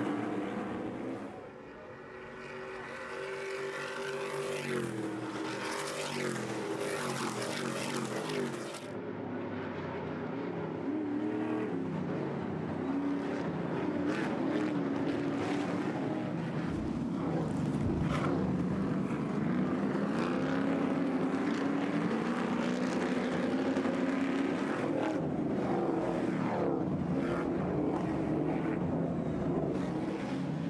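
Several Stadium Super Trucks' V8 racing engines running hard together, their pitch rising and falling as they rev through gear changes and corners.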